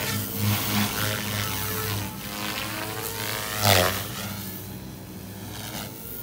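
XLPower Protos 380 electric RC helicopter flying aerobatics: its rotor and motor sound throbs and shifts in pitch as it swoops about. There is a loud swish about three and a half seconds in as it passes close.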